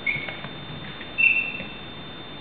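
Two short, high squeaks of sports shoes on a sports-hall floor: a brief one at the start and a longer, louder one about a second in.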